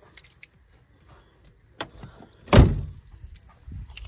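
A Hummer H2's driver's door shut once with a single heavy slam about two and a half seconds in, a lighter click coming a moment before it.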